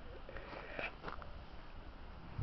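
A bull's breath sniffing close to the microphone, with a few short soft clicks around the middle.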